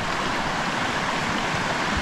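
Mountain stream running steadily, an even rush of water.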